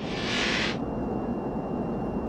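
Steady low rumble of airliner cabin noise, with a brief hiss over it in the first moment.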